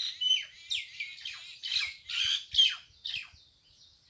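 A bird giving a rapid series of short, high chirps and squawks, some sliding down in pitch, which stop a little before the end.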